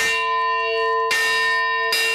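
A bell struck three times, about a second apart, ringing on between strikes. It is the opening-bell signal for the Pakistan Stock Exchange's market open.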